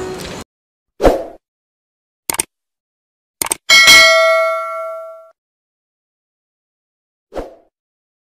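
Subscribe-button animation sound effects: a dull thump about a second in, two quick double clicks, then a bell ding that rings out for about a second and a half. Another soft thump comes near the end.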